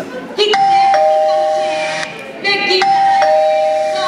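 Two-tone doorbell chime, a higher note followed by a lower held note, rung twice in a row.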